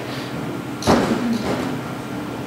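A single thump about a second in, over a steady low hum.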